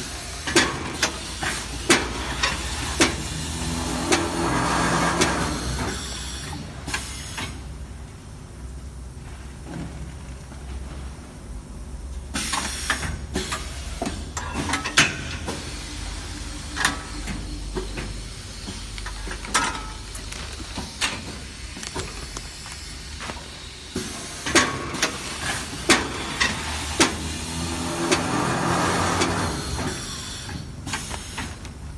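Automatic premade-bag packing machine running through its cycle: sharp clicks and knocks from its pneumatic grippers and cylinders, with air hissing, over a steady low machine hum. A louder stretch of rushing noise comes about four to six seconds in and again near the end.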